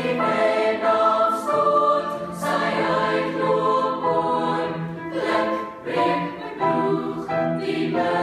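Large mixed choir of boys and girls singing in harmony, holding chords that shift every second or so, with sharp 's' sounds from the words cutting through.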